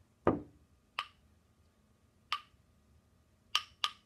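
Wooden rhythm sticks tapped in the pattern of a stick-passing game: a heavier knock on the floor, then single sharp clicks a second or more apart, and two quick clicks near the end.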